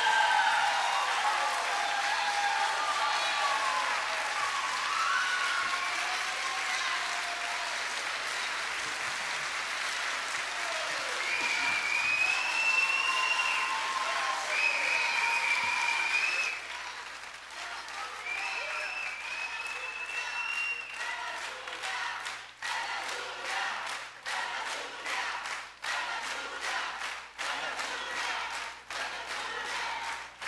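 Audience applauding heavily, with voices shouting over the clapping. About sixteen seconds in, the applause thins to scattered, separate claps.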